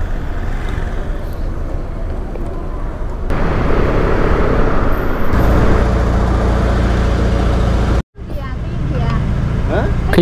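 Motor scooter and street traffic noise with a heavy low rumble, in short clips joined by abrupt cuts, with a brief dropout about eight seconds in.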